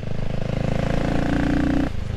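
The CCM Spitfire Six's 600cc single-cylinder engine runs loud as the throttle is wound on and the revs rise under acceleration.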